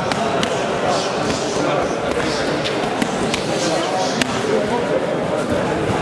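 Chatter of several voices echoing in a large sports hall, with several sharp smacks of strikes landing on kickboxing pads.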